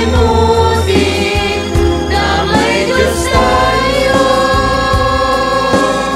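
Choir singing a Tagalog praise song in harmony, with long held notes over a steady low accompaniment.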